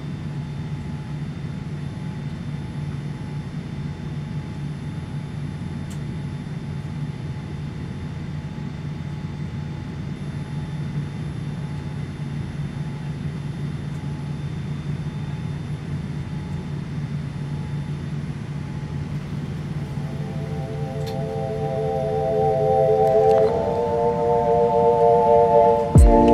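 Steady low hum of a Boeing 787-9 airliner cabin's air conditioning while the aircraft stands before pushback. About twenty seconds in, sustained chords of music fade in, change a few seconds later and grow louder toward the end.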